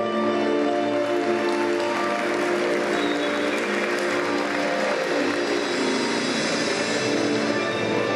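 Recorded program music plays over the arena speakers while the audience applauds, the clapping building in after about a second, thickest in the middle and thinning out near the end.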